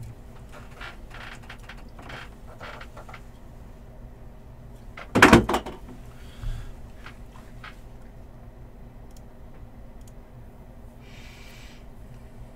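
One sudden loud knock or bang about five seconds in, followed by a smaller one about a second later. Faint handling clicks and rustles come before and after, and there is a short rustle near the end.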